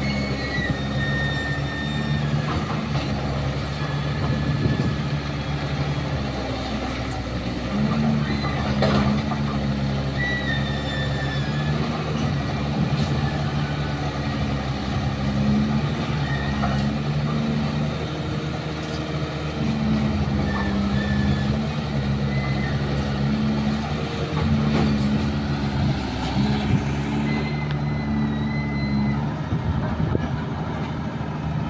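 Caterpillar 320C hydraulic excavator's diesel engine running steadily under work, its note stepping up and down every few seconds as the hydraulics load up and ease off, with a few knocks and clatters of broken concrete.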